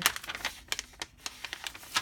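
Paper pages of a handmade junk journal being handled and turned, giving a run of small, irregular clicks and rustles, with a sharper click near the end.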